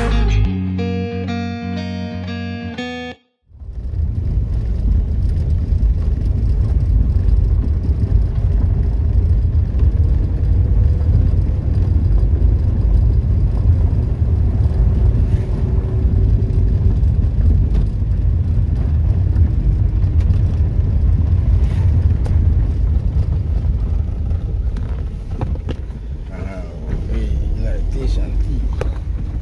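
Pop-style background music for about three seconds, cutting off suddenly. Then a steady low rumble of a car driving on an unpaved dirt road, heard from inside the cabin: tyre and engine noise.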